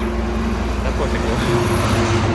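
A motor vehicle engine idling steadily, with wind rumbling on the microphone.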